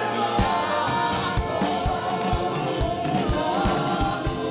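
A man singing a gospel-style song into a handheld microphone over a PA, with other voices joining in and a steady low beat about twice a second.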